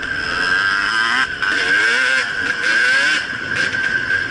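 Two-stroke enduro dirt bike engine running close to the microphone on a trail ride, its revs rising and falling repeatedly with the throttle in the middle of the clip.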